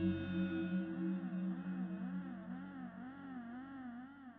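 Ambient background music: sustained electronic tones with a slow, regular wavering in pitch, about two to three wobbles a second, slowly fading out.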